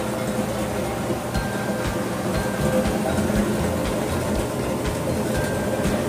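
Whirlpool top-load washing machine in its spin cycle: motor and drum running with a steady hum and low pulses underneath. Its suspension springs have just been replaced, and it is spinning without the violent shaking it had before.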